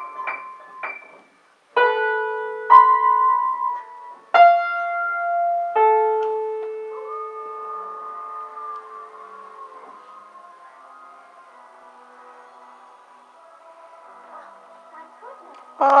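Acoustic upright piano played by a toddler's fingers: about six single notes and small clusters struck haphazardly in the first six seconds, the last left ringing and slowly fading away over the next several seconds.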